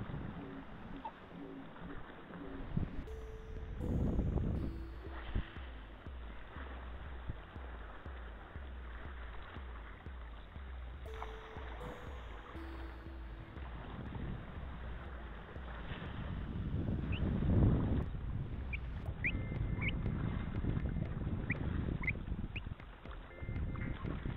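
Surf washing over the rocks, with wind on the microphone. A short low two-tone sound comes twice, about eight seconds apart, and a few short high chirps sound near the end.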